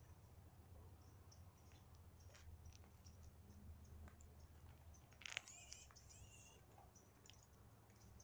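Near silence: faint low background hum with scattered faint high chirps, and one short louder chirp a little past five seconds in.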